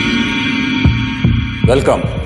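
Suspense underscore from a film teaser: a steady electronic drone with three deep thumps a little under half a second apart, starting just under a second in.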